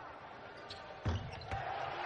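A basketball bouncing on a hardwood court, with a couple of thumps about halfway through, over faint arena noise.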